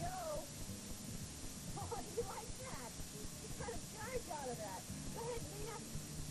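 Young children's high-pitched voices: short squeals and chatter that rise and fall in pitch, over the hiss and low hum of a worn VHS tape.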